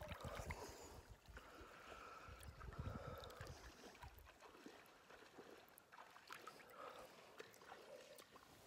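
Near silence with faint lake water sloshing and lapping around a swimmer's body close to the microphone, with soft low rumbles from the water's movement in the first half.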